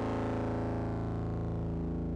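Iris 2 software synthesizer sounding one sustained low, buzzy note rich in overtones, held at a steady level while its brightest overtones slowly fade.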